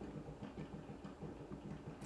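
Quiet room tone with a faint low hum.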